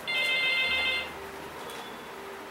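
Desk telephone ringing: one ring of several high tones sounding together, about a second long, that cuts off suddenly.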